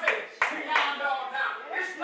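Voices speaking in prayer and praise over scattered hand clapping, with a few sharp claps near the start.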